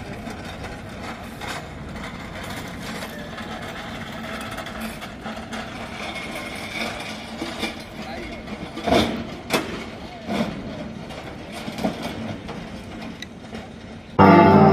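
Steady outdoor bustle with indistinct voices and a vehicle running, and several sharp knocks and clatters a little after the middle from a hand pallet jack and a truck's tail lift as a pallet of crates is unloaded.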